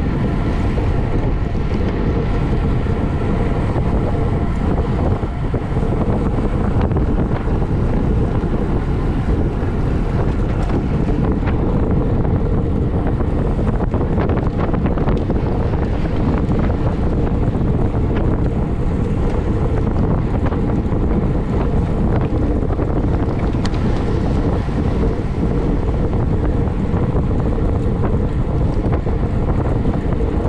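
Wind blowing over the microphone of a camera on a road bike riding at race speed: a steady, loud low rumble that does not let up.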